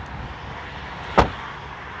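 A rear door of a 2015 Dodge Dart sedan being shut: one sharp thud about a second in, over a steady outdoor hiss.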